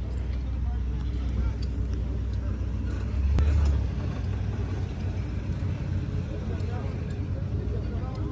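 Faint, indistinct voices over a steady low rumble, which swells briefly about three seconds in.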